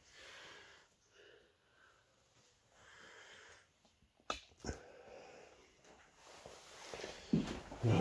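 Faint breathing close to the microphone, with two sharp knocks about half a second apart a little past the middle.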